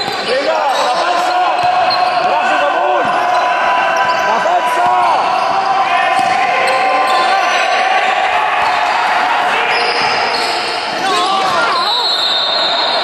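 Indoor basketball game: the ball bouncing on the court floor, sneakers squeaking in short sharp arcs as players cut and stop, and voices calling across a reverberant sports hall.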